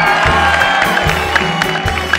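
Live Arabic orchestra playing a held melody over a steady low beat, with hand drums striking near the end; a crowd cheers underneath.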